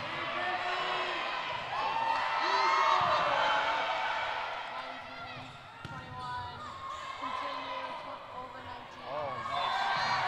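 Indoor volleyball rally: the ball being struck and shoes squeaking on the hardwood court under players' calls and spectators shouting, loudest about two to four seconds in, with a sharp hit near the middle.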